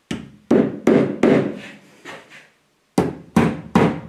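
Wooden mallet tapping a plastic cover onto the head of a seatbelt anchor bolt to seat it. The light taps come in two runs: about four, then a pause of over a second, then three more.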